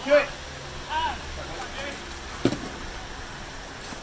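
Voices calling out over a dek hockey game, with a steady background hiss. About two and a half seconds in comes one sharp clack from the play.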